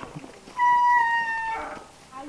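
One high-pitched, drawn-out cry about half a second in, held for about a second with its pitch sagging slightly, then breaking off into a short rasp.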